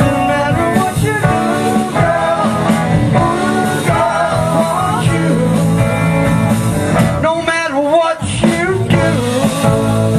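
Live band playing on electric guitars, bass guitar and drums, loud and steady, with pitch bends in the lead part about seven seconds in.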